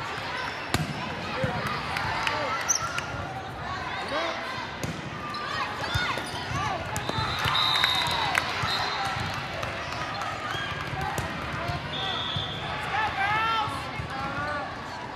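Busy indoor volleyball hall: many overlapping voices from players and spectators, with sharp thumps of volleyballs being hit and bouncing on the court. Short high whistle blasts sound about halfway through and again near the end.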